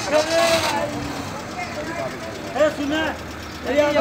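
Hyundai Accent car engine running at low speed as the car creeps forward, with people's voices calling out over it.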